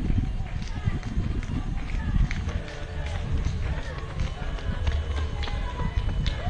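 Outdoor street ambience: indistinct voices of spectators over a constant low rumble, with scattered small clicks.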